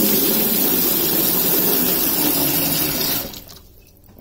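Kitchen tap running hard into a stainless steel sink that is partly filled, the stream splashing into the pooled water. The flow stops suddenly about three seconds in as the tap is turned off.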